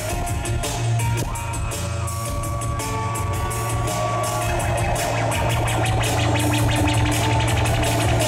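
Live industrial band playing an instrumental passage: a drum beat over a steady, heavy bass and sustained electronic tones.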